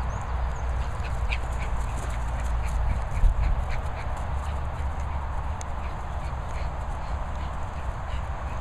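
A Doberman and a Bichon playing rough together: short animal sounds and scuffling from the dogs over a steady low rumble, with one louder thump a little after three seconds in.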